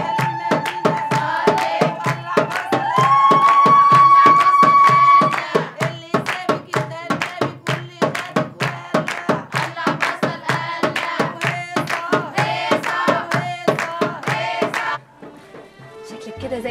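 A group of women clapping their hands in a quick steady rhythm with singing, as at an Egyptian wedding celebration. For the first five seconds a long high note is held over the claps and steps up in pitch partway through. It all stops abruptly about a second before the end.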